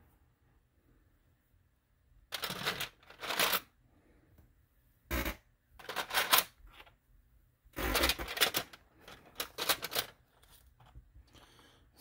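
Loose Lego pieces rattling and clicking in a clear plastic parts bin as a hand rummages through it and sets pieces down, in several short bursts starting about two seconds in.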